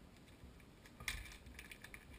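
A small plastic packet of fly-tying material crinkling and crackling in the hands as it is opened and handled, a quick cluster of faint crackles starting about a second in.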